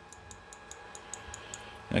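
Rapid, even, faint ticking, about six clicks a second, from the small microswitch of a 3D printer's clip-on auto-levelling sensor being worked by hand.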